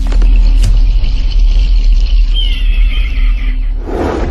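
Cinematic logo-intro music sting: a loud, sustained deep bass rumble, joined in the second half by a high shimmering tone that bends downward.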